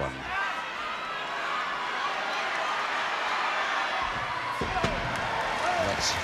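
Hall crowd noise, a steady din of many voices, with a heavy thud about four and a half seconds in as a wrestler's body hits the ring canvas.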